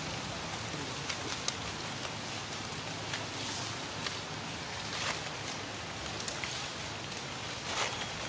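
Steady outdoor background hiss with a few faint, sharp clicks and rustles scattered through it.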